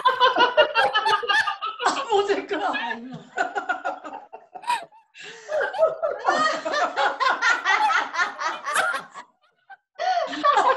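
Several women laughing together over a video call, in runs of rhythmic ha-ha pulses that die down about a third of the way in, then build up again and stop just before the end. This is deliberate laughter-yoga laughter, the group taking up a laugh one of them has offered.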